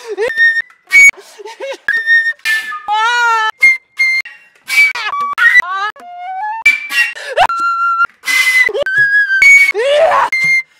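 Contemporary flute music electronically cut into short fragments: held high notes, wavering and sliding notes and breathy bursts, each stopping abruptly before the next begins.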